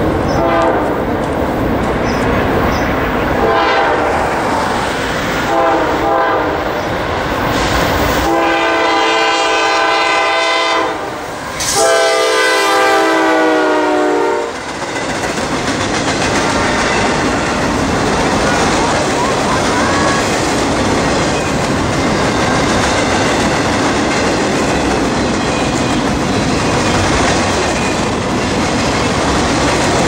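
A freight locomotive's multi-note air horn sounds a few short blasts, then two long ones, the second dropping in pitch as the locomotive passes close by. Then comes the steady rumble and wheel clatter of freight cars rolling past on jointed track.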